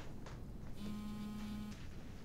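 Mobile phone vibrating: a single steady buzz about a second long, starting near the middle, announcing an incoming call.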